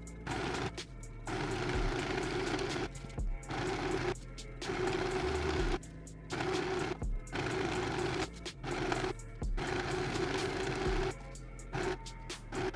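Portable mini sewing machine running a straight stitch through satin in runs of a second or two with short pauses between, over background music.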